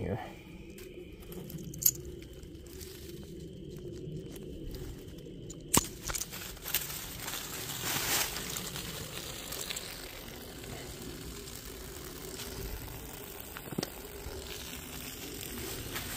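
Plastic maple sap tubing being cut by hand at the tree, with a sharp snip about two seconds in and another about six seconds in, over rustling and crunching of dry leaves and twigs.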